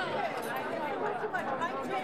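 Several people talking at once: overlapping conversation in a room.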